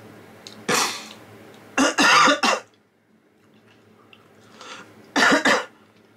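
A man coughing and clearing his throat in short bursts: once about a second in, a cluster of several around two seconds, and once more near the end.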